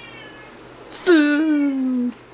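Domestic cat meowing in the background: one long meow about a second in that starts high and slides down in pitch.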